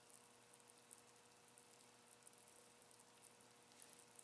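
Near silence: faint, scattered crackling of Klean-Strip paint stripper foaming and bubbling as it lifts the paint off a diecast metal car body, over a steady low hum.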